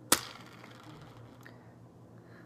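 A single sharp plastic click just after the start as a finger flicks the BeanBoozled box's plastic spinner arrow.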